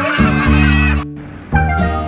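Children's song backing music with a honking, horn-like sound effect wavering over the first second, then a short drop in level before the music picks up again.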